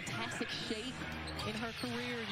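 Televised basketball game sound at low level: a commentator talking over the arena, with a basketball being dribbled on the hardwood court.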